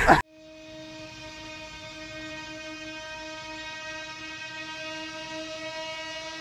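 A single steady held tone, buzzy with many overtones, that starts abruptly just after a voice stops and grows slightly louder over several seconds.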